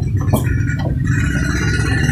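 Steady low rumble on the recording with a few brief faint voices; a higher hissing sound comes in about half a second in.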